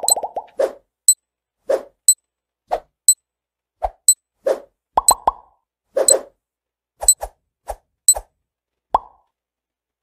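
Countdown-timer sound effect: a sharp high tick about once a second, with a short plopping pop between the ticks, stopping about nine seconds in.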